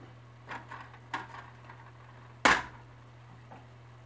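A spatula knocked against the metal of the stovetop or pot: one sharp knock about two and a half seconds in, the loudest sound. A few fainter clicks from stirring come before it, over a steady low hum.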